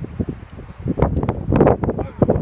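Wind buffeting the microphone in uneven gusts, growing stronger about a second in.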